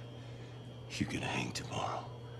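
A person's voice whispering briefly, starting about a second in, over a steady low hum.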